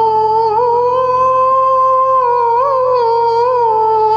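A voice humming a long, slightly wavering melody over steady electronic keyboard chords, the opening of a song.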